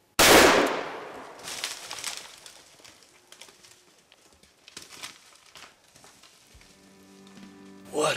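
A single shot from a .500 S&W Magnum handgun just after the start: a sharp, very loud report that rings away over about a second. A few fainter cracks and rustles follow, and steady background music comes in near the end.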